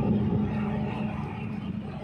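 Lorry driving away, its engine noise fading steadily, over a steady low engine drone.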